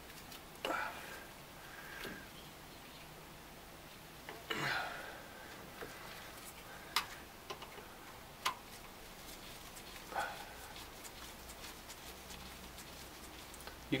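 Quiet hand-and-tool handling under the hood while a fuel pump is being disconnected: a few soft scuffs and rustles, and two sharp clicks about a second and a half apart past the middle.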